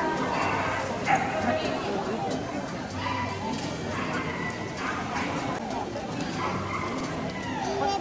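Dogs barking and yipping over the chatter of people talking in a large hall.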